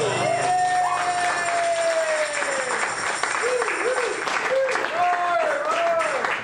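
Audience applauding and whooping at the end of a song, while the guitar's final chord rings out and fades over the first two seconds.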